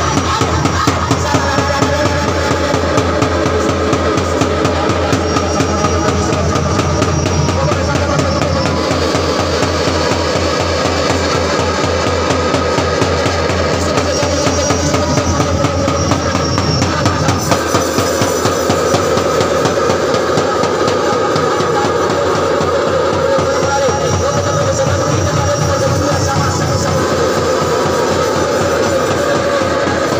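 Loud music with a fast, steady drum beat and instruments.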